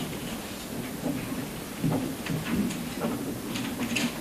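Room noise in a crowded courtroom: a steady low rumble with scattered small knocks and rustles from the people present.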